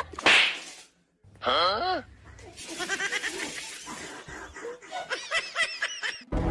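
A sharp swish-and-smack about a quarter second in as a hand swats at a small dog, followed a second later by a short cry that wavers in pitch.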